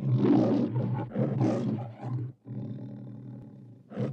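Lion roaring on the MGM logo soundtrack: two loud roars, the second starting about a second in, then a quieter, longer growl near the end.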